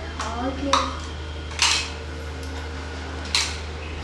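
Plastic toy dishes and cups knocking and clattering as small children handle them on a hard floor: three sharp knocks spread through a few seconds, over a low steady hum.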